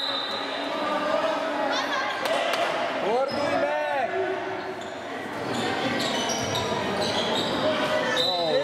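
A handball bouncing on a sports hall floor, with shouting voices echoing around the hall.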